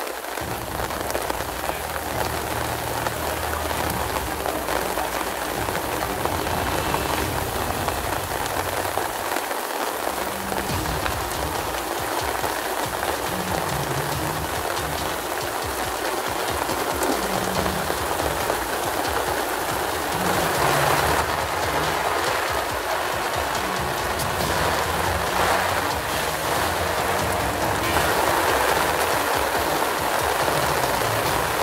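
Steady rain falling on canvas tents and grass, growing a little heavier in the second half.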